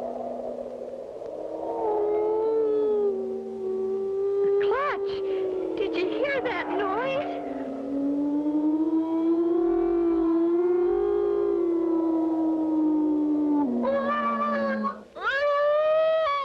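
Eerie howling-wind sound effect in a cartoon soundtrack: long, layered wailing tones that slide slowly up and down in pitch, with a few quick swooping cries a few seconds in. A voice starts near the end.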